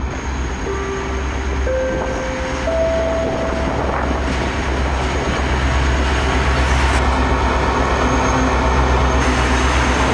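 M62M diesel locomotive running under power as it passes close by, its deep engine rumble growing gradually louder. In the first few seconds a three-note rising chime sounds over it.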